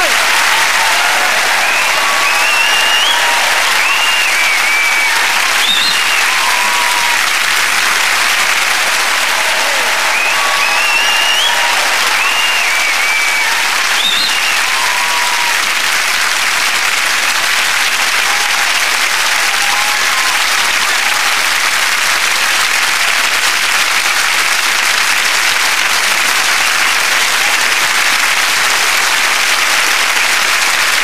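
Studio audience applauding steadily, with scattered cheers and whoops over roughly the first half.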